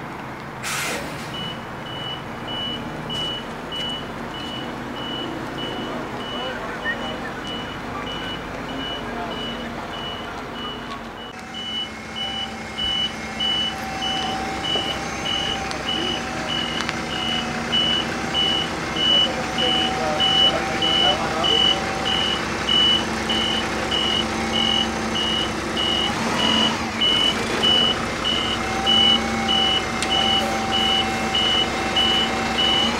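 Reversing alarm on an Irisbus Crossway LE city bus: a steady series of short, high beeps over the bus's idling engine as it backs slowly. The beeping gets louder in the second half.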